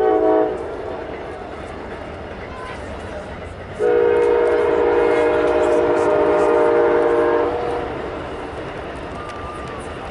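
Train horn sounding a chord of several notes: a short blast at the start, then a long steady blast of about three and a half seconds near the middle.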